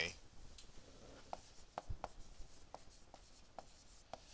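Stylus tapping and scratching on a tablet screen while a word is handwritten: a scattered run of faint small ticks.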